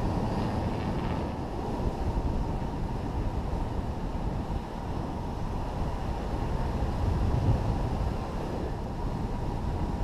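Steady wind rush buffeting the microphone of a camera mounted on a hang glider as it climbs under aerotow behind an ultralight tug.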